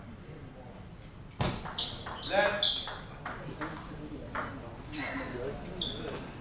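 Table tennis ball being struck by rackets and bouncing on the table in a rally: a run of sharp, irregularly spaced clicks starting about a second and a half in, loudest soon after. A short voice is heard in the middle of the rally.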